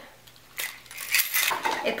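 Keys and other small hard items in a purse clinking and rattling together as they are handled, a quick run of clicks starting about half a second in.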